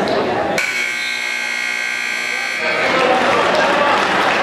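Gym scoreboard buzzer sounding one long steady blast of about two seconds, which starts suddenly, over crowd chatter.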